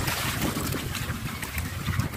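Small waves washing and splashing among rounded shore boulders, with wind buffeting the microphone in uneven low gusts.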